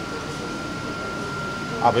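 Steady background hum and hiss with a faint, constant high-pitched whine, under a low murmur of people nearby. A man's voice starts again near the end.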